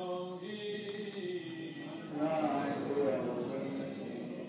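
Male voices chanting a Hebrew prayer to a slow melody that steps from held note to held note, swelling about two seconds in.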